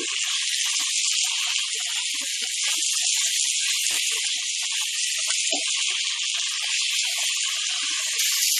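Onion-tomato masala sizzling steadily in hot oil in a nonstick pan on medium heat. It is stirred throughout, with light scrapes and taps of the spatula against the pan.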